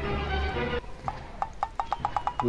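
A held, pitched sound, then, about a second in, a quick, even run of sharp clicks, roughly eight a second, like hoofbeats.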